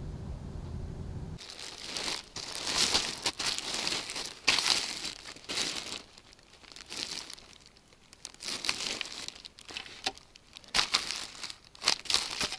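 Plastic wrapping of a packaged tarp crinkling in irregular bursts as a gloved hand handles it. It follows a low steady rumble that cuts off about a second and a half in.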